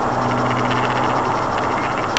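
Steady road noise inside a 4x4's cabin cruising at motorway speed: an even rush of tyre and wind noise with a low, steady engine hum under it.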